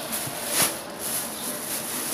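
Thin plastic produce bag rustling and crinkling as a bunch of fresh greens is handled, with one sharper crinkle about half a second in.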